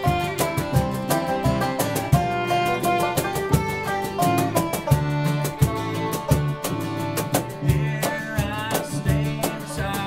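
Acoustic bluegrass band playing live, with upright bass, fiddle, acoustic guitar and banjo, driven by a quick, steady picking rhythm.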